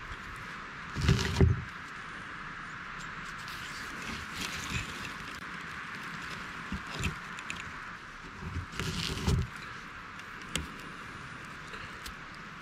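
Close handling noise of hands moving around the microphone, with two louder rustling bursts about a second in and around nine seconds, and a few light clicks, over a steady outdoor hiss.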